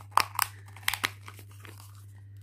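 Plastic packaging crinkling as it is handled, with a cluster of sharp crackles in the first second and fainter ones after.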